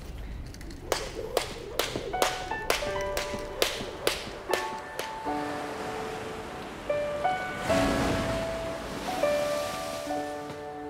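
Film score music: a quick run of sharp, struck hits for the first few seconds, with pitched notes joining in, then held notes and a swelling wash about eight seconds in.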